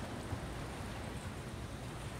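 Steady room tone of a large hall: an even, quiet hiss with a low hum and no distinct event.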